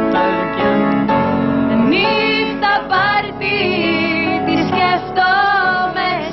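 A woman singing a slow Greek pop song over keyboard accompaniment. The keyboard chords run throughout, and the sung line comes in strongly about two seconds in.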